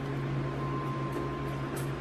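A steady low electrical hum with a thin, faint high whine over it, unchanging throughout.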